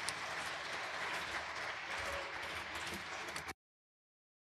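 Audience applauding faintly, a steady patter of clapping that cuts off suddenly about three and a half seconds in.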